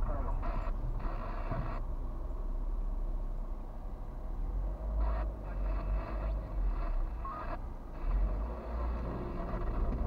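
Low, steady rumble of a car's engine and running gear heard from inside the cabin through a dashboard camera's microphone, with several short stretches of hiss coming and going.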